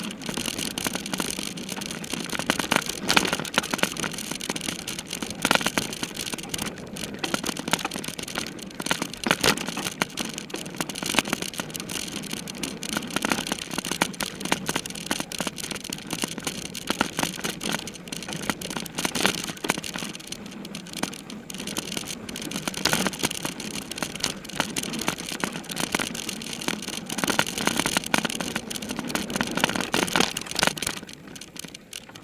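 Mountain bike being ridden hard over rough dirt singletrack, heard from the bike itself: a continuous, dense clatter of rattles and knocks from the frame, chain and camera mount, mixed with tyre and wind noise.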